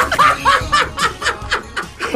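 Laughter: a string of short chuckles in quick succession.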